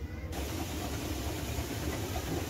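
Wheat-cleaning machine at a chakki flour mill running: a steady low motor hum with a dense hiss as wheat grains shake down across its mesh cleaning screen. The hiss comes in abruptly just after the start.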